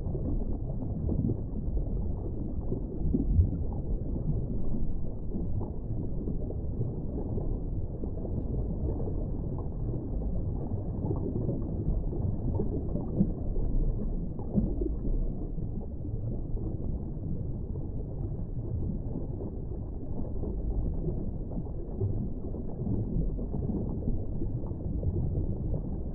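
Underwater ambience: a muffled, low, steady wash of water noise with faint flickers in it and no high sounds.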